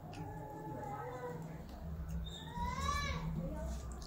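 High-pitched drawn-out calls from a voice: a short wavering one near the start, then a longer one about two and a half seconds in that rises and falls. A low steady hum sits underneath.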